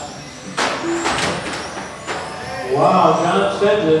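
Electric RC touring cars with 21.5-turn brushless motors running past, a high motor whine over a rush of tyre noise from about half a second to two seconds in.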